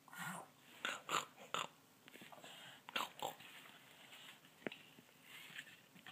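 Short breathy snorts imitating a pig: four in the first second and a half, then two more about three seconds in. A single sharp click follows a little before five seconds in.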